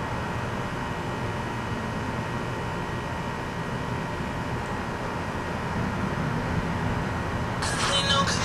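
Steady low rumble of background noise with no distinct events. Music with singing comes in near the end.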